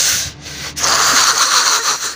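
Handling noise on a handheld camera's microphone: two bursts of rubbing, scraping noise, each about a second long, as the camera is swung around.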